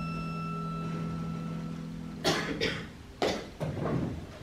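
A held piano chord rings steadily, then is cut off about two seconds in; after it come four short coughs in two quick pairs.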